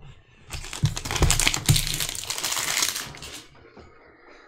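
Foil trading-card pack wrappers crinkling as they are handled, with a few soft knocks, for about three seconds.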